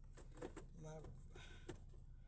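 A woman speaking a few quiet, broken-off words inside a car cabin, over a faint steady low hum.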